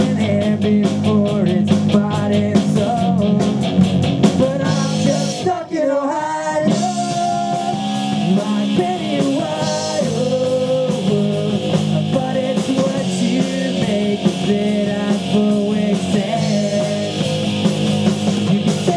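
Live rock band playing: electric guitar through an amp and a drum kit with steady cymbal strokes, with singing over it. There is a short break in the drums about six seconds in.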